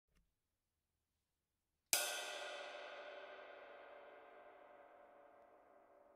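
Handcrafted 21-inch ride cymbal, 2399 g, with a lathed top and unlathed bottom, struck once about two seconds in and left to ring. It rings in a long wash of many overlapping tones that slowly fades.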